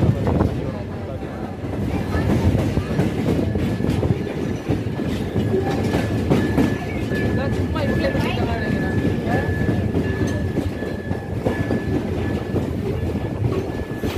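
Open-air passenger train car rolling along the track: a steady rumble with the clatter of wheels over the rails. A thin, steady high tone joins for several seconds in the middle.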